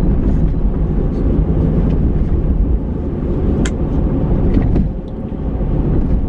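Car cabin noise while driving: a steady low rumble of road and engine, with two light clicks, one at the start and one a little past halfway.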